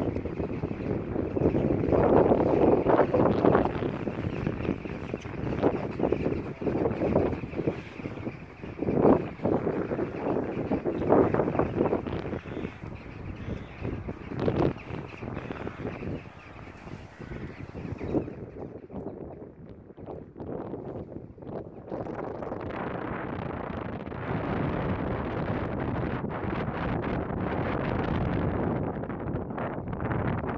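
Wind buffeting the microphone: a rushing noise that surges and fades in gusts for the first half, then turns into a steadier rush after a sudden change about two-thirds of the way in.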